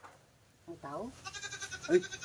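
A goat bleating: a wavering, quavering call that starts about two-thirds of a second in and runs on.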